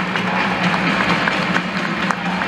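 Many spectators clapping at once in a steady patter, over a steady low hum.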